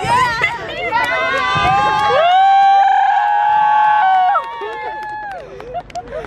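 Several young people screaming together, with wavering cries that rise into long high held shrieks. The shrieks break off about four seconds in, leaving quieter voices.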